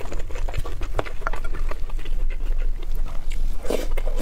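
Close-miked ASMR eating sounds: wet chewing and smacking of a mouthful of rice in egg sauce, with irregular clicks from a wooden spoon scooping in a glass bowl. A denser burst of mouth noise comes near the end as the next spoonful goes into the mouth.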